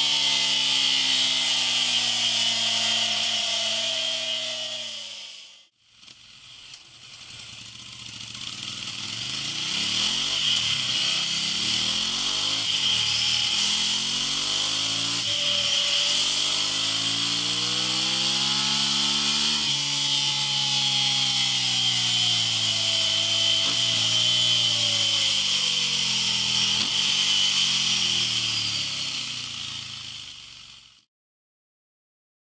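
Ducati Scrambler 800's air-cooled L-twin engine running through a MIVV Ghibli slip-on exhaust, its note rising and falling over and over as it is revved and eased off. The sound fades out about five seconds in and fades back in a second later.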